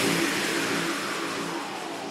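Drum-and-bass music in a breakdown: the bass and drums have dropped out, leaving a hissing noise sweep that slowly falls in pitch and fades away.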